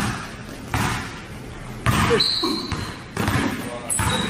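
A basketball dribbled on a gym floor, a handful of bounces about a second apart, each with a hall echo.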